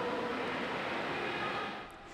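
Steady hiss of a large indoor pool hall's ambience, fading out near the end.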